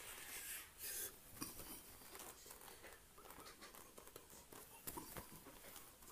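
Near silence: faint room tone with a few soft taps and rustles.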